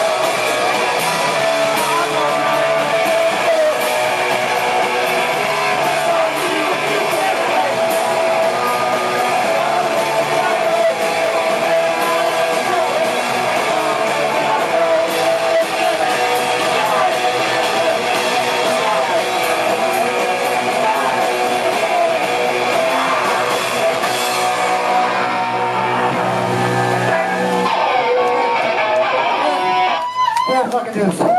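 Live rock band playing: electric guitars strummed over drums, loud and continuous, with the song ending near the end.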